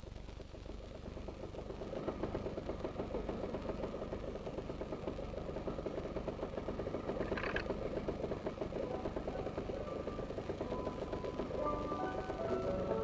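A cartoon sound effect of an old open car's engine, a fast, steady putt-putt rattle that builds up over the first couple of seconds and then runs on as the car stands idling. There is one short, higher sound about halfway through, and a few musical notes come in near the end.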